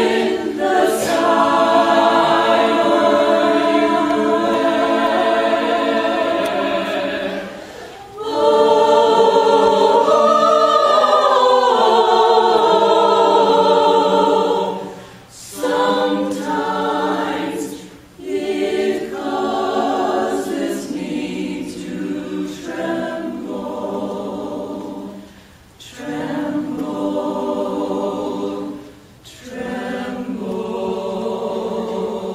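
Choir singing long held chords in phrases, with short breaks between them every few seconds.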